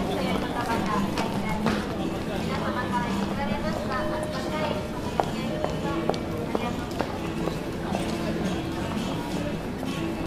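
Street brass music, a slow tune of long held notes, over the chatter of a passing crowd. Footsteps click on the hard pavement, with sharp heel strikes about five to seven seconds in.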